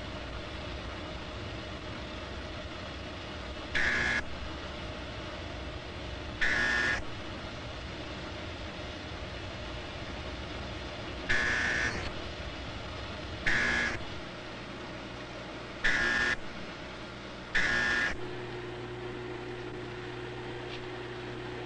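Smoke-school signal bell ringing in six short bursts of about half a second each, at uneven gaps of two to five seconds, from about four seconds in until near the end. Each ring signals the trainees to record their reading of the smoke. A steady low hum runs underneath.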